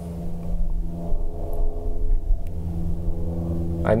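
Steady electrical hum with a buzz of evenly spaced overtones from a small guitar amplifier with an electric guitar plugged in and idle. Under it a low rumble swells about half a second in and fades by about three seconds.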